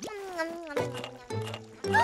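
Wordless, squeaky cartoon character vocalizations sliding up and down in pitch, over a background music score.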